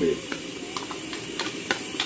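A spoon scraping and clicking against a bowl as chopped vegetables are pushed off it into a pot. There are several short, sharp clicks over a steady low hiss.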